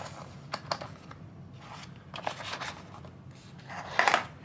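Cardboard soap boxes and paper packaging being handled: a scatter of light taps, scrapes and rustles as the boxes are slid and set into the tray of a cardboard presentation box.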